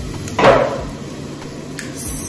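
A single sharp knock of a hard object on a hard surface about half a second in, fading quickly.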